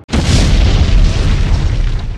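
An explosion sound effect: a sudden loud boom that starts abruptly, followed by a deep, sustained rumble.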